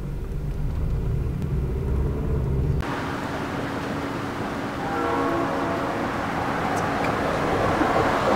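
Car road noise heard from inside the moving car, a steady low rumble that cuts off abruptly about three seconds in. It gives way to steady outdoor street noise with passing traffic.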